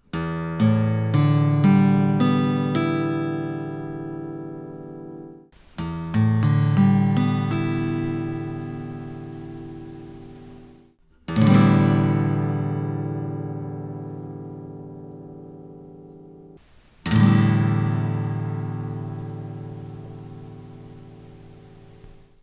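Acoustic guitar's open strings plucked one after another, six notes rising from low to high and left to ring, played twice in a row. Then all the strings are strummed at once, twice, each strum ringing out and slowly fading. It is a side-by-side tone comparison of the guitar without and with a Planet Waves O-PORT cone in the soundhole, picked up by a microphone.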